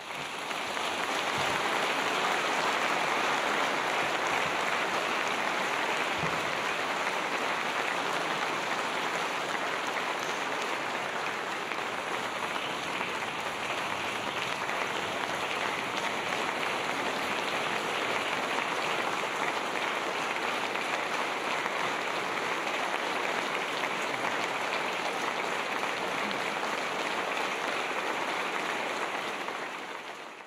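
Large audience applauding, a dense, steady clapping that starts at once and holds for the whole time.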